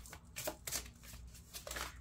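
A deck of oracle cards being shuffled by hand: a few short strokes of cards sliding against each other, the last near the end.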